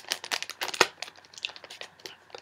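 Packaging being handled and crinkling: a run of quick crackles, the loudest just under a second in.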